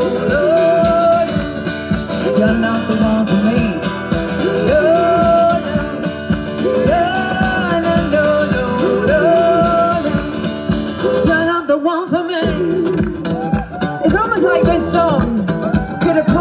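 Live song: a woman singing with a strummed acoustic guitar over a steady beat. The beat drops out briefly about twelve seconds in, and the singing carries on in several overlapping lines.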